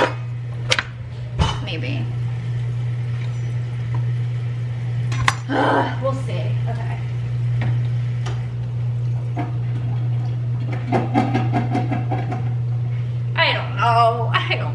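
Kitchen utensils and dishes being handled: a few sharp clinks and knocks of metal tools on a plastic cutting board and countertop, over a steady low appliance hum.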